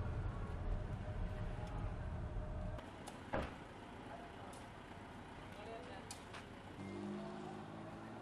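Low rumble of a car driving, heard from inside the vehicle, for the first few seconds. It then gives way to quieter street ambience with a single sharp knock and a few faint clicks.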